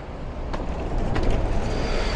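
Street traffic noise, a vehicle passing with a steady rumble that swells slightly after about a second, with a few light clicks.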